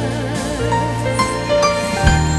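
Live gospel-style worship music: several singers on microphones singing with vibrato over band accompaniment with sustained bass notes.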